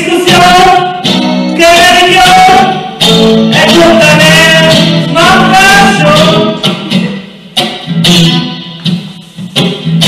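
A man singing a German dialect song into a microphone, accompanied by two strummed guitars. From about seven seconds in, the singing breaks off and the guitars play more softly for a couple of seconds.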